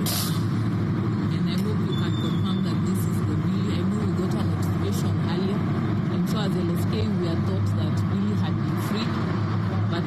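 A steady low vehicle-engine rumble runs throughout, under a woman talking.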